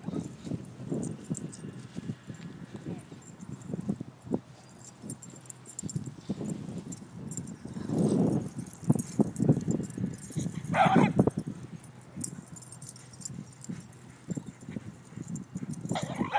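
Dogs playing in dry grass: irregular scuffling and rustling, louder about halfway through, and a single short, high bark about eleven seconds in.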